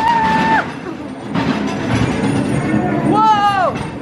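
Dark-ride car rumbling along its track, under the ride's spooky soundtrack. A held tone sounds at the start, and a falling wail comes near the end.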